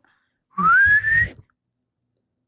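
A single whistled note, breathy and rising steadily in pitch, lasting just under a second.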